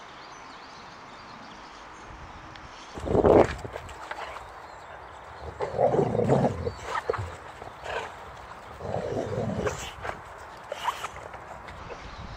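Boxer dog growling in play with a ball held in its mouth: a string of rough growls, the loudest about three seconds in, then a longer run of growls around the middle and shorter ones near the end.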